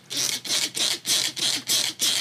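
Hand trigger spray bottle squirting water onto a leather belt in quick repeated sprays, about four a second, wetting the leather before it is skived.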